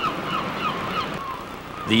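A flock of birds calling: a quick run of short, high calls over a steady hiss, thinning out after about a second.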